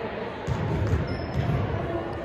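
Basketballs bouncing on a hardwood gym floor: irregular thuds echoing in the large hall.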